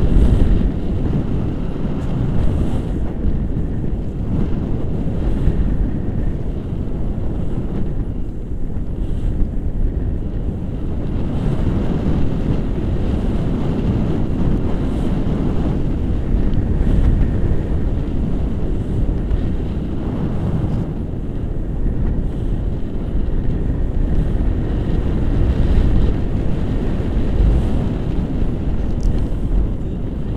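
Wind rushing over a camera microphone during paraglider flight: a steady, low, buffeting rumble of airflow.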